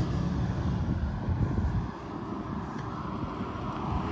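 Wind buffeting the microphone outdoors: a steady low rumble with some hiss, dipping briefly about halfway through.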